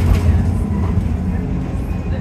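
Bus driving along the road, heard from inside the passenger cabin: a steady low rumble of engine and tyres.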